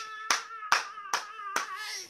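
A person clapping their hands in a steady rhythm: about four claps, a little over two a second.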